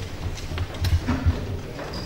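Handheld microphone being picked up and handled at a podium, giving a few dull thumps and knocks through the sound system.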